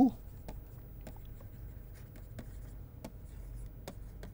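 A stylus writing on a pen tablet, with faint scratches and light ticks of the pen tip on the surface over a low room hum.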